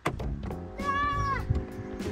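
A cat meowing: one call that rises and falls, about a second long, starting about half a second in, over background music with held notes.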